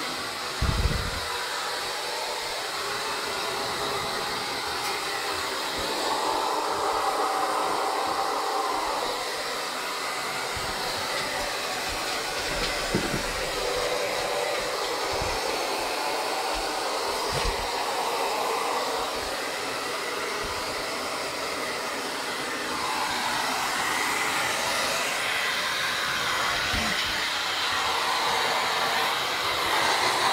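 Handheld hair dryer blowing steadily as it dries a wet dog's coat, its rush swelling and easing as it is moved about. A few soft low thumps come through now and then.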